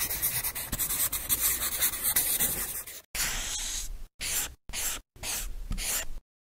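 Scribbling sound effect, like a marker dragged over a surface: about three seconds of continuous crackly scratching, then four short separate strokes, each shorter than the last.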